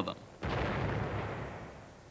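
A single heavy blast of naval gunfire, a sound effect laid over the soundtrack. It hits sharply about half a second in and rumbles away over about a second and a half.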